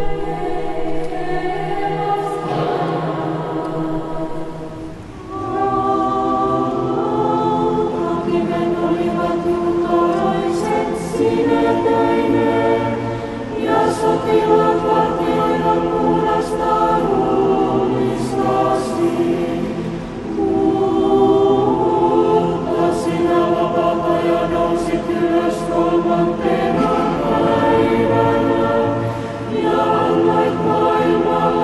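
Choir singing Orthodox church music unaccompanied, in long held chords, phrase after phrase with short breaks between them.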